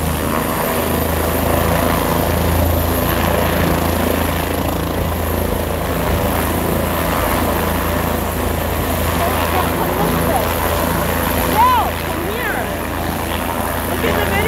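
Helicopter running on the ground with its main rotor turning, a steady, loud drone with a deep, even low pulse, before lift-off.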